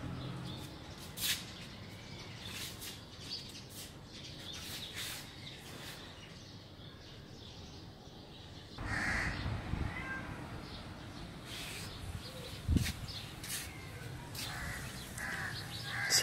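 Outdoor background picked up by a phone's microphone, with crows cawing and scattered sharp clicks. The background becomes louder about nine seconds in.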